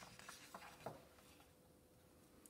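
Faint rustle of a paper page being turned in a hardcover picture book, with a couple of soft ticks, dying away after about a second.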